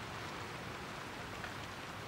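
Faint, steady hiss of rain, heard as a film's background ambience.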